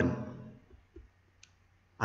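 A faint click about a second in, and a fainter tick shortly after, in an otherwise near-silent pause: a computer mouse clicking to bring up the next slide content.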